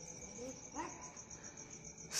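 Crickets chirping: a steady, rapidly pulsing high trill, with a faint voice briefly about half a second in.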